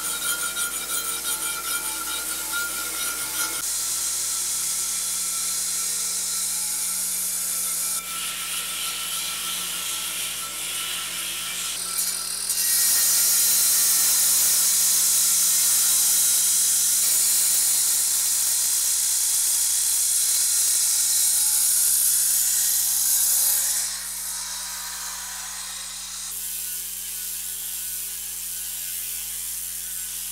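Marble being worked with power tools: a loud, high grinding noise that changes abruptly several times. The loudest, steadiest stretch, from about 12 to 24 seconds in, is an angle grinder's disc grinding a marble block.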